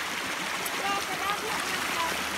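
Shallow creek water running over rocks, a steady rushing hiss, with a faint distant voice about a second in.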